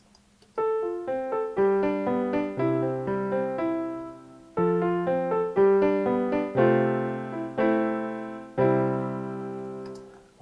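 Logic Pro X's Yamaha Grand Piano software instrument playing back a simple recorded MIDI melody with chords after Smart Quantize has been applied. The notes start about half a second in, break briefly around the middle, and end on held chords that die away.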